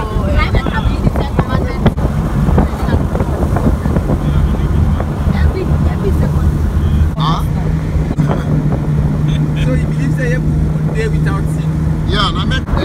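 Car driving along a road, heard from inside the cabin: steady engine and road noise, with a low even hum settling in about a third of the way through.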